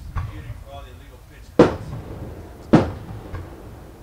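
Two sharp thumps, a little over a second apart, among faint voices.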